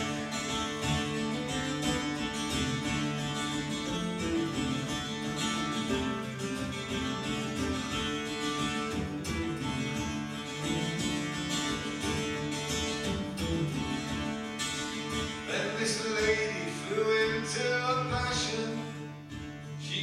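A solo cittern-style plucked string instrument, strummed and picked in an instrumental break between sung verses of a folk ballad; the melody line gets busier near the end.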